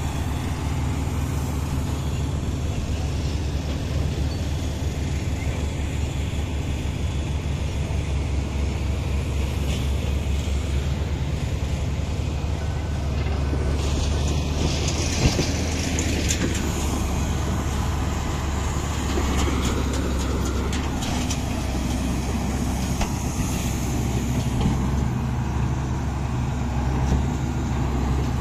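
Komatsu crawler bulldozer's diesel engine running steadily under load as it tows a stuck truck free, a constant low drone.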